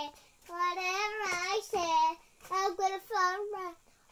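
A young child singing in a high voice, several drawn-out notes in short phrases with brief pauses between them.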